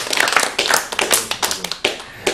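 Hand clapping from a small group: quick, irregular claps greeting a goal. The claps thin out near the end.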